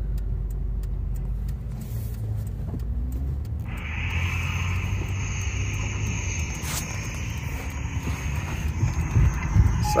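Moving car's road and engine noise inside the cabin, a steady low rumble. About four seconds in, a steady higher hiss with a thin high tone joins it.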